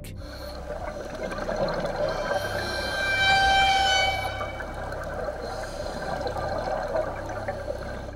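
Underwater ambience from the dive footage: a steady low rumble and watery hiss. A set of steady tones swells up about two seconds in and fades away by the middle.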